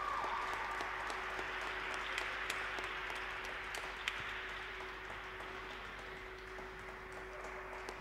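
Audience applauding after the program, a steady haze of clapping with a few sharper single claps, slowly fading over a faint steady hum.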